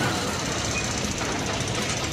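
Cartoon sound effect of a machine running: a steady, rapid rattling rumble that starts suddenly and holds at an even level.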